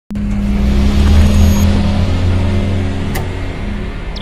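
Cinematic sound design: a deep low rumble under a steady electric hum, starting suddenly. There is one sharp mechanical click about three seconds in, as the robotic claws clamp the sphere.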